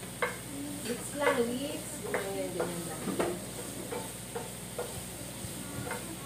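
Wooden spatula stirring and scraping shrimp in a frying pan, its strokes on the pan coming irregularly at first and then about twice a second, over the sizzle of the frying food.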